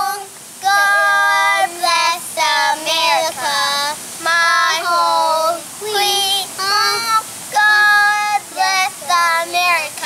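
Two young boys singing a song together in held, sustained notes, phrase after phrase with short breaks for breath.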